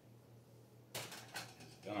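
Air fryer basket being set down on a stovetop: a couple of sharp knocks about a second in.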